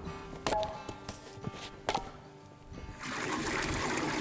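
Two sharp metal clanks with a brief ring as the galvanized stovepipe cap is handled, over soft guitar music. About three seconds in, a steady splashing stream of maple sap begins pouring into a steel evaporator pan.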